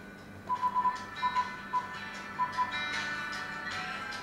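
Music from a demo video playing through a car stereo head unit's speaker, getting louder as the volume is turned up on the touch screen. About eight short, identical electronic beeps in small clusters come with the volume steps, between about half a second and three seconds in.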